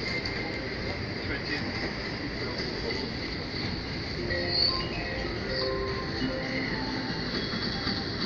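Casino floor ambience: a steady din of background voices and gaming-machine noise, with short electronic tones and jingles from slot machines starting about four seconds in.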